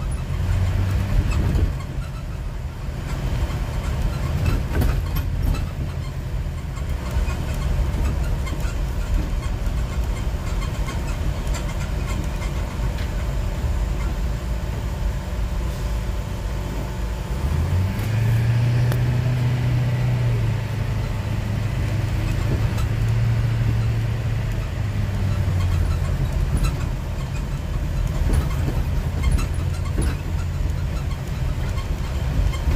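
Steady low rumble of engine and road noise, heard from inside a moving vehicle. A stronger engine hum comes up for several seconds past the middle.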